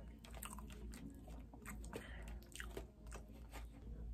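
Faint, close-up chewing of soft food, with irregular small clicks and smacks from the mouth.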